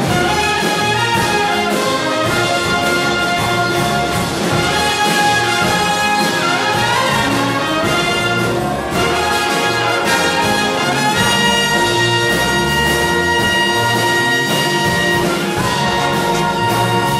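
Jazz big band playing a full-ensemble passage, the trumpets and trombones to the fore over the rhythm section.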